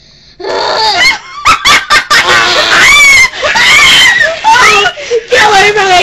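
Young voices screaming and shrieking at a very loud, clipping level, mixed with laughter. It breaks out suddenly about half a second in, in long high-pitched wails that rise and fall.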